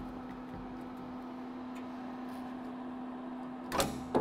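A steady low hum over faint shop room noise, with a short sharp clatter just before the end.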